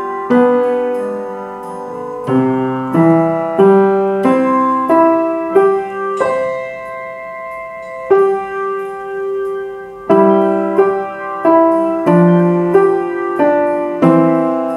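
Piano playing a simple two-handed beginner melody in slow, even notes, some held long, along with a backing track.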